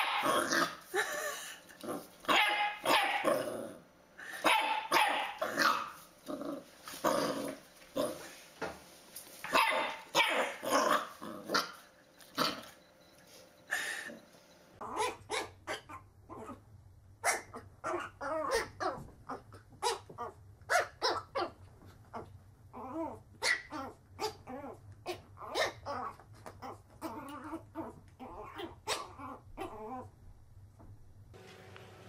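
Puppies barking repeatedly. First a dachshund puppy barks at a toy pig. About 15 seconds in, a small fluffy puppy takes over, yapping in quick short barks at its own reflection in a mirror, over a low steady hum.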